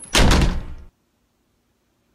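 A door sound effect: one loud, rough burst lasting under a second that cuts off abruptly into silence, in answer to a joke about a haunted house's doors.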